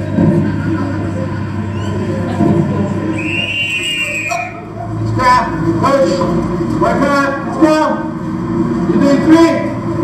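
Soundtrack of an indoor circuit-training session played back into a large hall: a steady murmur of activity, a single coach's whistle blast about three seconds in lasting over a second, then people shouting and calling out.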